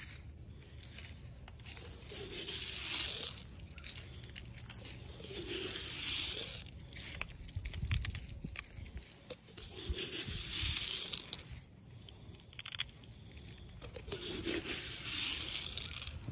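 Quiet rustling and handling noise close to the microphone, with four soft breathy swells about four seconds apart.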